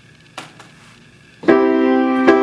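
Upright piano: after a near-quiet pause with a brief click, a chord is struck about one and a half seconds in and rings on, the first chord of the song.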